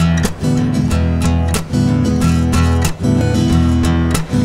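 Music: a steadily strummed acoustic guitar, an instrumental bar between sung lines of a song.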